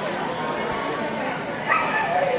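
A dog barks once, loudly, near the end, over the murmur of voices.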